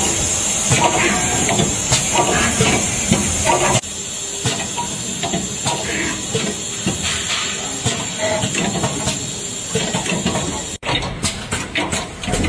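Automatic drill-bit straightening machine at work: a steady hiss and a thin high tone under irregular mechanical clicks and knocks. The sound changes abruptly twice.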